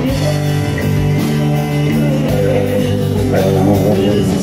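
Live country band playing the song: guitars over bass and drums, with a steady beat.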